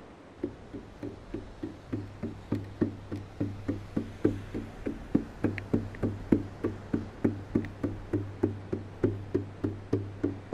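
Percussion music: evenly spaced knocking strokes, about three a second, with a low bass tone that comes in about two seconds in and pulses with the beat.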